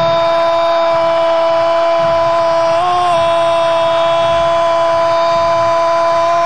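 Football commentator's long, held 'goooool' cry at a steady pitch, with a brief lift in pitch about three seconds in, celebrating a goal.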